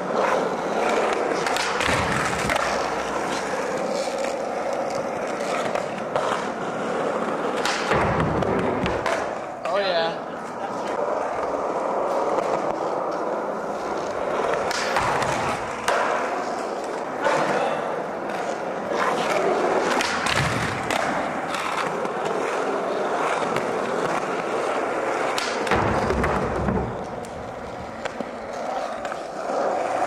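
Skateboard wheels rolling steadily on a smooth concrete floor, with several sharp board clacks and landing thuds spread through the run as tricks are popped and landed in a line.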